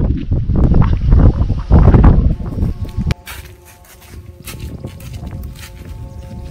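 Gusty wind buffeting the microphone for about three seconds. It cuts off suddenly to a quieter, steady drone of several held notes from kite flutes (Vietnamese sáo diều) sounding in the wind, with light scattered clicks.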